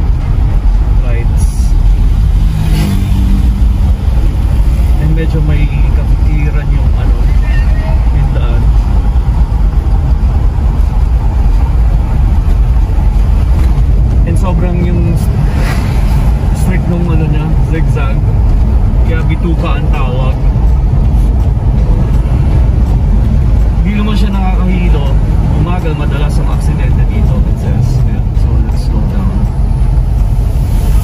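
Steady low rumble of a car's engine and tyres heard from inside the cabin while driving on a paved road. Low voices of people talking come and go at a few points.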